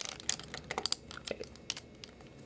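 Hard plastic Transformers Voyager-class Fallen action figure being handled: an irregular run of light plastic clicks and taps as its parts are pressed and shifted in the hands.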